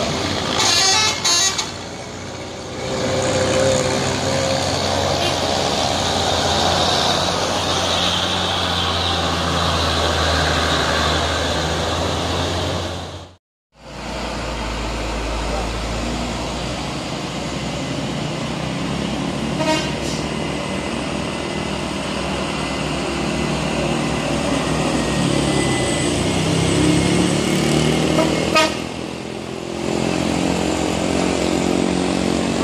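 Traffic on a steep hairpin: truck and car engines running under load with a steady low hum, and short horn toots about a second in, around twenty seconds in and near the end. The sound drops out briefly at a cut about halfway through.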